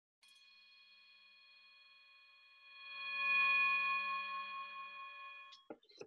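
A bell-like ringing tone with several overtones: faint at first, it swells to its loudest about three and a half seconds in, then fades away before the end, followed by a couple of small clicks.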